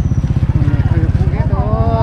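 An engine idling close by, a fast, even low throb that runs steadily without change, under voices.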